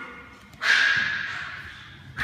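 A dog whining: a single high, drawn-out cry that starts about half a second in and fades away over a second or so.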